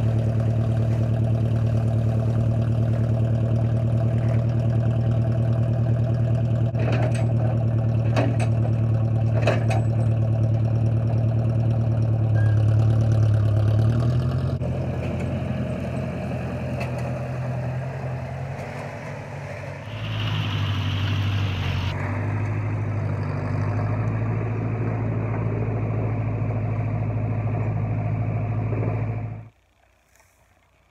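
Massey 50 tractor engine running steadily while its three-point-hitch loader dumps soil, with a few knocks about seven to ten seconds in. The engine note drops about fourteen seconds in and picks up again around twenty seconds, then the sound cuts off suddenly near the end.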